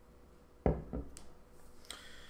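A man's short, closed-mouth 'mm-hmm' of approval: two low murmurs, the first sudden and fairly loud about two-thirds of a second in, the second weaker about a second in, followed by a couple of faint clicks.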